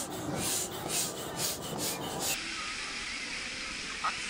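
An air pump pushing air through its hose into an inflatable vinyl pool float, in rhythmic hissing strokes about three a second. About two-thirds of the way through it cuts off suddenly into a steady wash of outdoor noise.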